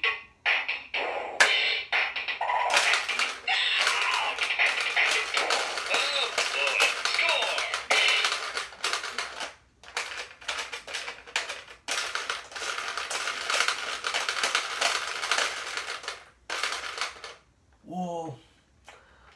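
Bop It Extreme electronic toy running its game: a beat with its electronic voice calling commands, and quick plastic clicks of its controls being worked, the clicks thickest at the start and again about halfway through.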